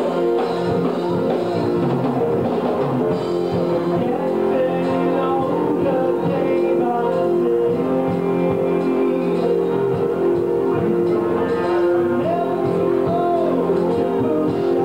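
Live rock band playing: electric guitars, keyboard and drum kit together in held, sustained chords, steady and loud without a break.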